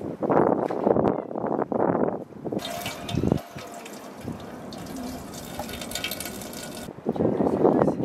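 Water running from an outdoor tap and splashing into a metal bowl as raw chicken is rinsed under it. The splashing is loud and uneven at first, then settles into a steady run of water.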